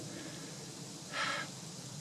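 A man's single short, audible breath through the mouth or nose, about a second in, over a faint steady background hiss.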